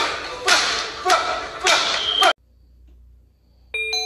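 Boxing gloves smacking into focus mitts at a steady pace of about two punches a second, five sharp hits, cutting off suddenly about halfway through. Near the end a short chime of several bell-like ringing tones starts.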